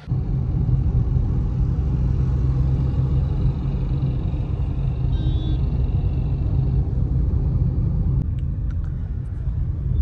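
Steady low rumble of a car being driven, heard from inside the cabin: engine and road noise, with a few faint clicks near the end.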